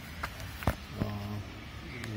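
Handling noise around a motorcycle's plastic front fairing: one sharp click about two-thirds of a second in, with a lighter click before it.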